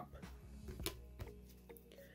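Faint background music with a few light clicks of rigid plastic card holders being handled as one card is put down and the next picked up.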